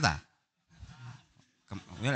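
A man lecturing into a microphone in Javanese: the end of a spoken phrase, a short quieter voice sound about a second in, and his speech starting again near the end.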